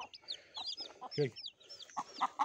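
Newly hatched chicks peeping in a plastic bucket: a quick run of short, high, falling peeps from several chicks at once.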